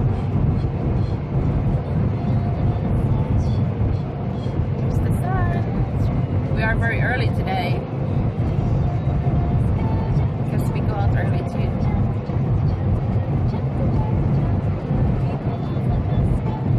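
Steady low road and engine rumble inside the cabin of a moving car, with a few brief high-pitched voice sounds about five to eight seconds in.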